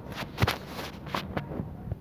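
Fingertips tapping a phone's touchscreen: a few short, sharp taps, the first about half a second in and two more close together a little past the middle, over faint background noise.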